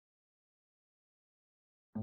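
Near silence: a completely blank soundtrack, with a short pitched sound just starting at the very end.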